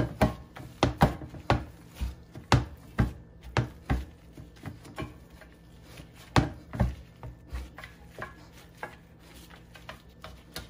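Raw ground-beef meatloaf mix being patted and pressed by hand into a loaf pan: a run of irregular sharp slaps and knocks, thickest in the first four seconds and again around six to seven seconds in.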